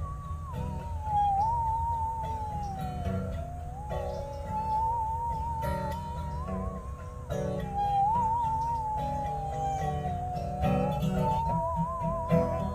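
Bowed musical saw playing a slow melody, one wavering, sliding tone that swoops up and down, over guitar accompaniment.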